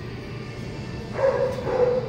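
A dog gives one drawn-out bark a little over a second in, over a low steady background hum.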